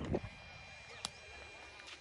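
Quiet background with a brief voice sound at the very start and one faint, sharp click about a second in.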